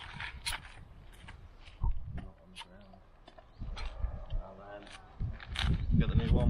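Scattered short clicks and knocks of metal caravan jockey-wheel parts being handled, with a voice speaking in places.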